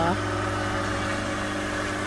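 Crop-spraying helicopter's engine and rotor giving a steady, even hum as it flies over rice paddies spraying pesticide.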